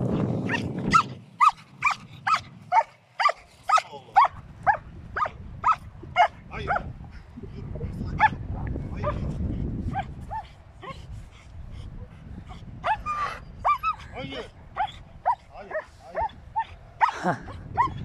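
German shepherd barking over and over, short sharp barks about two a second, thinning out and pausing briefly around the middle before starting up again.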